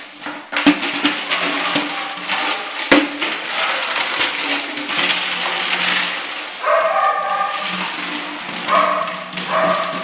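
A shaken rattle can clattering continuously, with a young Belgian Malinois puppy giving short high-pitched cries about seven seconds in, again around nine seconds, and at the very end.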